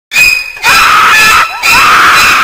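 A person screaming: three long, shrill, very loud screams in quick succession, the last running on past the end.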